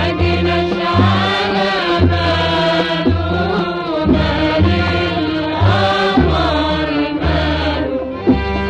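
Egyptian Arabic orchestra, with violins and cellos, playing a bending, ornamented melody over a steady low beat.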